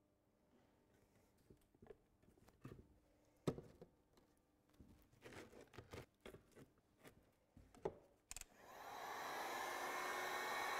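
Faint scattered knocks and taps of bench work, then near the end a hot air gun switches on and runs with a steady blowing noise, heating a bitumen shingle section to shape it into a ridge tile.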